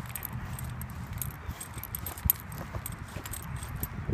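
Keys jingling in irregular small clicks as they are carried while walking, over a low steady rumble of wind on the microphone.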